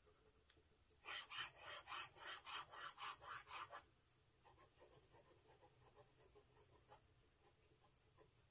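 Fountain pen's medium nib scratching over Tomoe River paper in a quick run of back-and-forth scribble strokes, about three a second, lasting about three seconds. Then come a few faint, light pen ticks.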